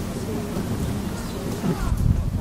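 Wind buffeting the microphone, a steady low rumble, with faint distant voices.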